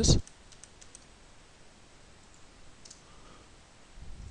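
A few faint, scattered clicks of computer keyboard keys during code editing.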